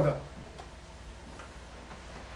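A man's spoken word trails off, then quiet room tone with a low steady hum and a few faint ticks.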